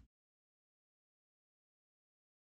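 Digital silence: the soundtrack cuts off right at the start and stays silent.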